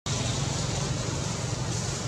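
Steady outdoor background noise: a low hum under an even hiss, with no distinct events.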